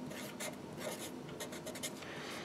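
Marker pen writing on paper: a quick series of short, faint scratching strokes.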